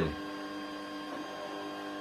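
FlashForge Dreamer 3D printer running, a steady hum of several held tones.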